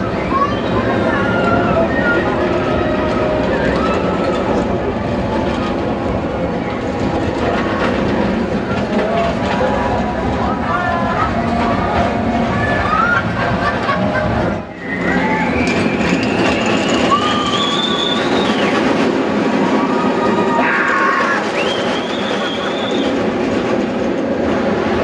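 Roller coaster trains of a travelling inverted steel coaster rumbling along the track amid fairground crowd noise. A rising whine runs for a few seconds a little past the middle, after a brief dip in the sound.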